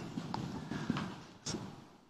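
A pause between speech: low room noise with a few faint, short clicks or taps, three in all, the last one about a second and a half in.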